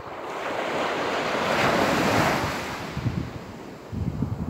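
Surf washing onto a beach: the hiss of one wave swells to a peak about halfway through and fades, with wind rumbling on the microphone near the end.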